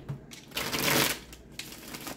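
A deck of tarot cards being shuffled by hand: a burst of card rustling about half a second in, lasting well under a second, then quieter handling of the deck.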